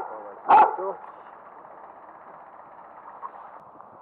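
A dog barks once, a short loud call about half a second in, followed by a steady low background.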